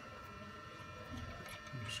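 Quiet steady hum with a few faint clicks as a brass sight-glass nut is handled and wiggled up the glass.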